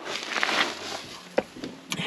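A person climbing down off a boat's stern deck onto ground strewn with dry leaves: scuffing and rustling steps, then a sharp knock about a second and a half in.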